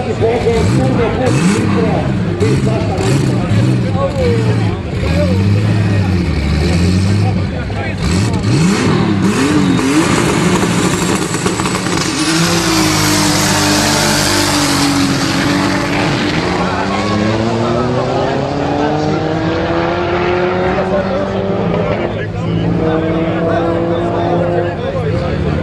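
Race car engines revving unevenly at a drag-race start line. About halfway through comes a loud rush of noise, then engines pull away under hard acceleration, their pitch rising steadily, with a gear change and a fresh climb near the end.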